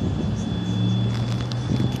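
A steady low mechanical drone, like an engine or motor running nearby, with a little wind on the microphone.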